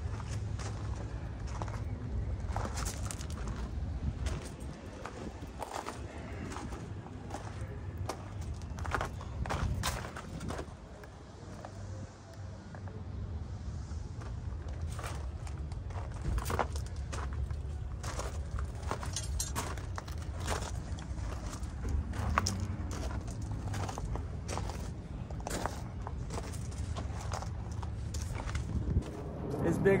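Footsteps crunching on gravel, irregular and uneven, over a low steady rumble.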